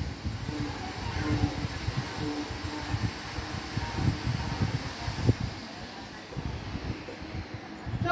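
Uneven low rumbling background noise, with a single sharp click about five seconds in.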